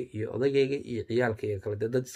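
A man speaking in Somali.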